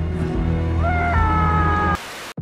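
A high, drawn-out wailing cry that rises and is then held from about a second in, over a low steady drone of film score.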